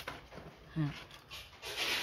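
Steel blade of bypass pruning shears scraping dry leaf sheath and fibre off a sugarcane stalk: a sharp snap at the very start and a rasping scrape near the end.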